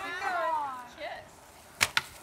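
A stick whacking a hanging piñata: a sharp knock near the end, followed at once by a second, smaller one, after a moment of high voices.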